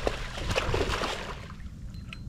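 A hooked sheepshead thrashing and splashing at the water's surface, the splashing dying down toward the end.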